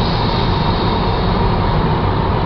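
Steady road noise inside a car's cabin while driving on a highway.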